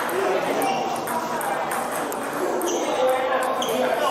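Celluloid-type plastic table tennis balls bouncing and clicking off bats and tables in an echoing sports hall, over a steady murmur of voices.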